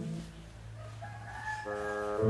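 Background music: a held low bass note, with a thinner higher tone gliding up and holding from about halfway through, and a new chord coming in near the end.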